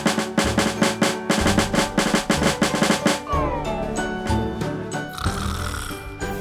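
Fast snare-drum roll over background music for about three seconds, then the drumming stops and falling sliding tones follow, with a short hiss near the end.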